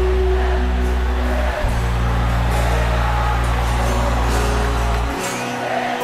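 Live rock band playing an instrumental passage with electric guitar over a deep, sustained bass. The bass breaks off briefly under two seconds in and drops out about five seconds in.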